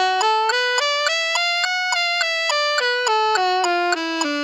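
Alto saxophone playing a G# minor blues scale in even notes, climbing stepwise to its top note about halfway through and coming back down, with a metronome clicking in time.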